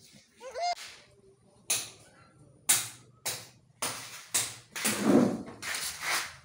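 A short wavering cry about half a second in, then a series of about seven sharp knocks or chops, each ringing briefly, roughly one every half second to second.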